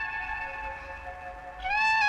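Instrumental music: a reedy wind instrument playing a slow melody of held notes with pitch slides. It goes softer through the middle, then slides up to a louder note near the end.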